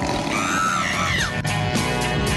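Upbeat rock background music with guitar. A high voice rises and falls over it for about a second near the start.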